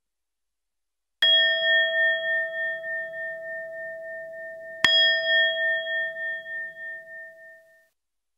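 A bell-like chime struck twice, about three and a half seconds apart, each stroke ringing on with a wavering tone and fading out slowly.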